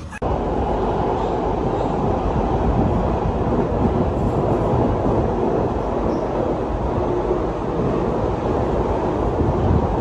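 A London Underground train heard from inside the carriage while it is moving: a loud, steady rumble and rattle of the train running, which starts suddenly just after the start.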